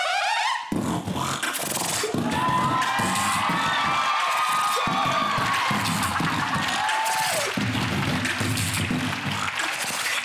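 A boy beatboxing into a handheld microphone, making kick-drum and snare sounds with his mouth in a steady rhythm. It starts about a second in and has a few brief breaks.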